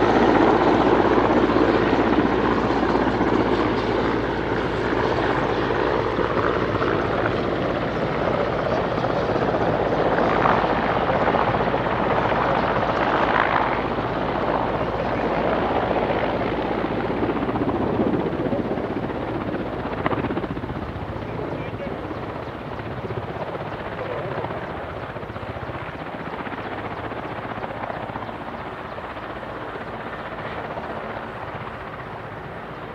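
Mil Mi-8-family twin-turboshaft military helicopter flying low, then settling onto the runway, its main rotor and turbines running steadily. The noise is loudest at first and fades gradually as it comes down.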